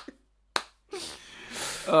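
Two short, sharp clicks about half a second apart, then a soft breathy hiss that grows louder just before a man starts speaking.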